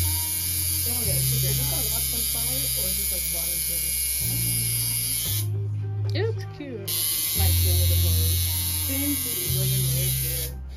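Electric tattoo machine buzzing as it works ink into skin. Music with a deep bass line that changes pitch in steps plays over it.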